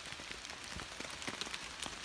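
Light rain falling: a steady hiss dotted with many small, scattered drop ticks.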